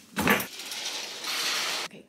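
A black travel bag set down on a wooden luggage rack: a thud with a light clink of metal fittings, followed by about a second and a half of rustling.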